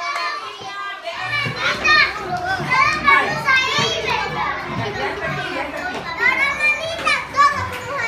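Many young children's voices talking and calling out over one another, getting fuller about a second in.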